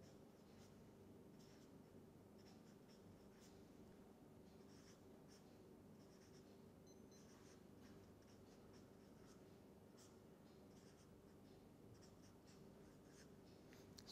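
Faint, short scratching strokes of a marker pen writing on paper, over a low steady hum.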